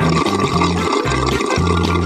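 A steady gushing liquid sound over upbeat background music with a repeating beat.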